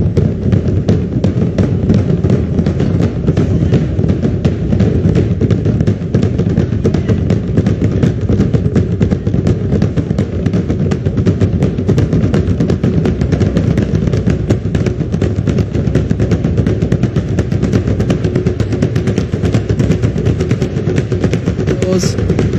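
A drum ensemble beating several large laced skin drums with sticks in a rapid, even, unbroken rhythm, the drum accompaniment to a Tongan ma'ulu'ulu sitting dance.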